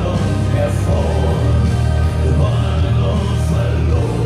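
Live pop-rock band music with a male lead vocal and choir-like backing singing over held bass notes, heard through an audience phone recording.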